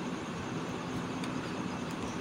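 Battery e-rickshaw rolling forward over a dirt track under motor power: steady running and tyre noise with a faint steady hum. It moves forward even with the reverse switch set, which the owner suspects is a fault in the 12-volt supply.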